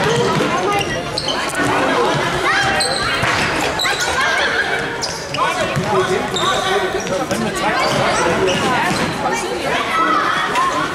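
Indoor football play in a large, echoing sports hall: the ball being kicked and bouncing on the wooden floor among players' running feet, with children's voices calling out throughout.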